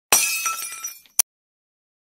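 Intro sound effect: a sudden shattering crash with ringing tones that fades over about a second, followed by one sharp click.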